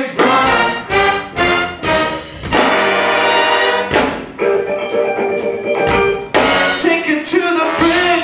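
A live big band plays funk, with short punchy brass stabs in a tight rhythm and one long held chord about halfway through.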